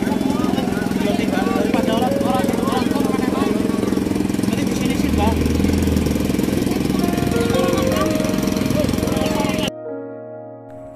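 Water tanker truck's engine running steadily with a fast, even rhythm while people talk over it. Near the end it cuts off abruptly and music takes over.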